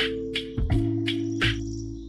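Lofi hip-hop instrumental: soft drum hits on a steady beat over sustained chords and bass.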